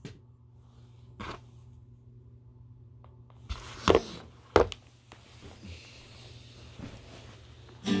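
Handling noise from the phone being moved and set down on a table: a few sharp knocks, the loudest two close together about four seconds in, over a low steady hum. A guitar strum starts right at the end.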